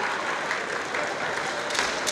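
Spectators applauding in a large hall, mixed with shouting voices, and one sharp clack of a bamboo kendo sword near the end.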